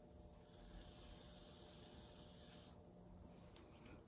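Near silence: faint room tone, with a faint hiss from about half a second in to nearly three seconds in.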